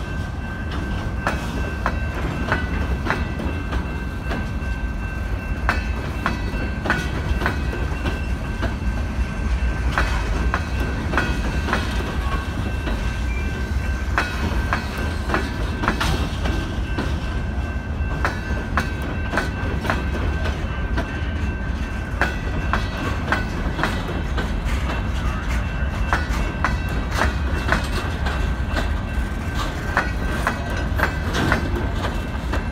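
Loaded freight hopper cars rolling past close by. Steel wheels click over the rail joints on a steady low rumble, with a thin high ring held throughout.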